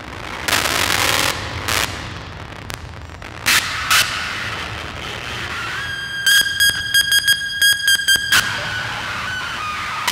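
Amplified daxophone, its wooden blade bowed and scraped: loud rasping bursts and sharp knocks in the first half, then from about six seconds a sustained high squealing tone with rapid clicks running over it, which slides down in pitch near the end.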